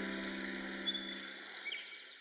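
The last piano chord of a piece fading away over a forest ambience of steady hiss. A few short bird chirps come in during the second half.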